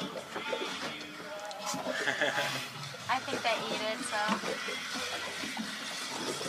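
Indistinct voices talking quietly in the background over a faint, steady low hum.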